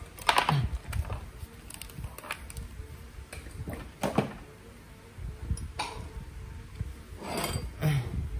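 Scattered clicks and light knocks of metal motor parts, a multimeter and test leads being handled and set down on a workbench, with the hollow steel motor housing picked up near the end.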